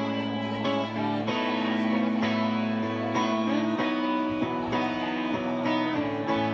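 Live band playing a quiet instrumental passage, electric guitars to the fore, held chords changing about every second.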